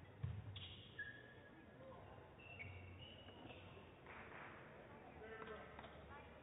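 Near silence in a large sports hall, with a soft thump just after the start and then a few short, high squeaks on the badminton court mat.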